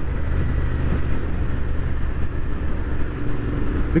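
Royal Enfield Interceptor 650's parallel-twin engine running steadily at cruising speed through aftermarket exhausts, a low even rumble with a rush of wind and road noise over it.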